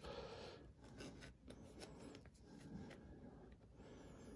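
Near silence, with faint rubbing and light clicks of a small wooden stick being tried in the holes of a steel drill-size gauge plate, sizing it for a drill bit.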